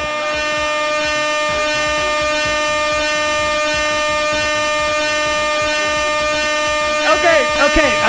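Canned air horn sounding one long, unbroken, loud blast at a steady pitch. A man's voice starts talking over it near the end.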